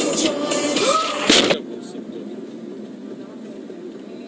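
Music with a singing or talking voice playing inside a moving car, cut off about a second and a half in by a short, loud burst of noise. After that comes a quieter, steady hum of car and road noise heard from inside the cabin.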